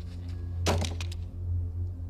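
A quick cluster of sharp cracks and clattering knocks a little under a second in, lasting about half a second, over a low steady music drone.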